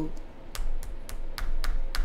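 A series of light, sharp clicks and taps, about seven in two seconds and irregularly spaced, with a few soft low thuds: small handling noises.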